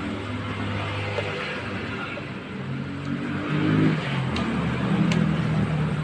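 A motor vehicle engine running, its low hum rising in pitch and getting louder over the second half, with a few light clicks.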